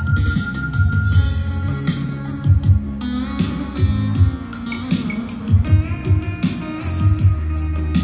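Guitar-led recorded music played loud through a pair of Prodio 480 MkII karaoke speakers, with a pulsing deep bass and crisp cymbal ticks on top.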